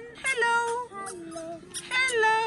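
A child's high-pitched voice calling a drawn-out, sing-song "hello", followed by a lower, falling vocal sound.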